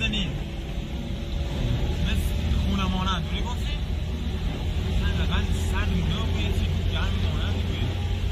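Voices exchanging greetings over a steady low rumble.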